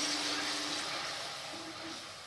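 Tomato paste sizzling in hot oil in a steel kadai as it is stirred with a wooden spatula, the hiss slowly dying down.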